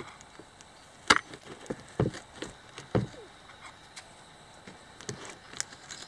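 Metal snips cutting through the cured fiberglass-cloth overhang on the edge of a fiberglass seat: a series of separate sharp snaps and crunches, the loudest about one, two and three seconds in, then fainter cuts near the end.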